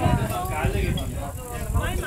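People talking indistinctly, with a low, uneven rumble underneath.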